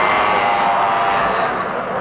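A vehicle engine running steadily, with a broad rushing noise, fading near the end.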